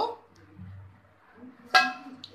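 Stainless steel lid clinking against the rim of a steel container as it is pulled off: one sharp metallic strike with a short ring, about three-quarters of the way in.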